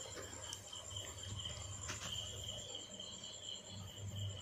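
A cricket trilling steadily and faintly, with a low hum beneath it.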